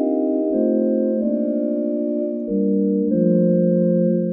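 Sampled vintage Thomas console organ on a tibia voice, holding sustained chords with a warbling vibrato. It starts on a C minor chord and changes chord several times.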